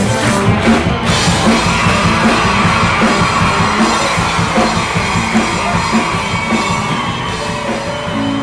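Rock song with a drum kit and a female lead vocal; from about a second in she holds a long, wavering sung note over the band.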